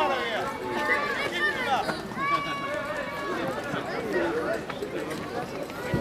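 Distant, high-pitched children's voices calling and shouting across a football pitch, several overlapping calls with no clear words.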